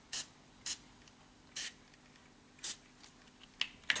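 Fine-mist pump spray bottle of homemade acrylic spray paint misting onto a paper sketchbook page: four short sprays at uneven intervals. A couple of small clicks come near the end.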